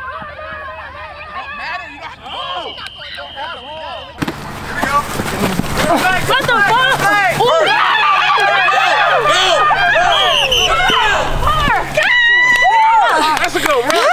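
Several people talking and calling out over one another, with no single clear voice. The sound jumps abruptly louder about four seconds in.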